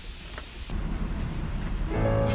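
Faint outdoor background noise, cut off under a second in by a steady low rumble of heavy rain heard from behind a rain-spattered window.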